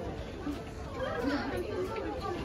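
Indistinct chatter of shoppers' voices, no clear words.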